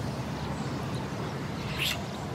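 Steady low outdoor background rumble, with a brief soft hiss-like sound near the end.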